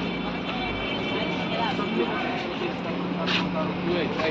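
A steady low mechanical drone, with faint voices of people moving about.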